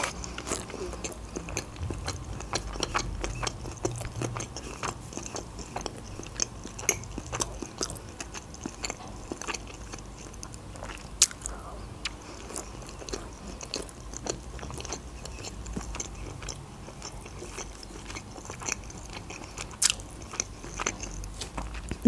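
A person chewing food close to a clip-on microphone, with many small wet mouth clicks and smacks; a louder click stands out about eleven seconds in and another near the end.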